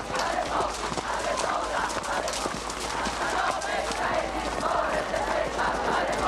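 Several horses' hooves clip-clopping at a walk on hard ground, an uneven stream of knocks, over the continuous murmur of many voices in a crowd.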